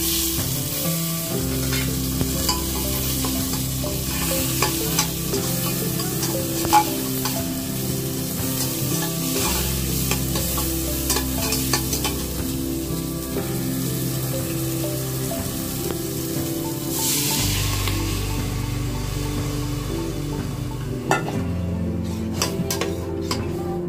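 Tomatoes and spices sizzling in hot oil in a pressure cooker pot, stirred with a spatula that scrapes and clicks against the metal.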